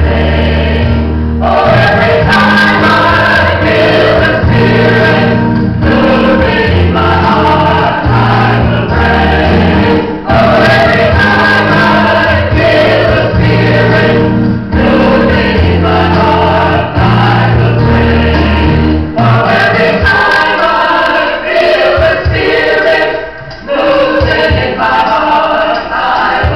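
A choir singing a Christian worship song over sustained deep bass notes; the bass drops away about three-quarters of the way through.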